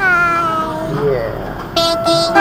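A high-pitched cartoon baby's voice making a long cooing sound that slowly falls in pitch, then a brief rising squeak. Near the end, a pitch-corrected sung note of a cartoon song begins.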